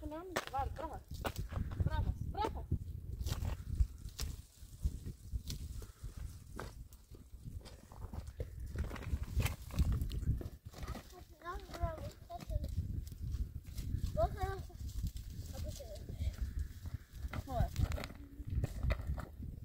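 Low rumble of wind on the microphone with scattered crackles and knocks, and short pitched calls that rise and fall, heard near the start and a few times in the second half.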